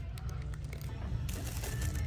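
Thin plastic bags of toys crinkling as they are handled, over a steady low background hum.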